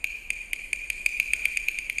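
Teochew opera percussion accompaniment: a single high-pitched ringing percussion instrument struck repeatedly, accelerating from about two strikes a second into a fast, even roll by the end.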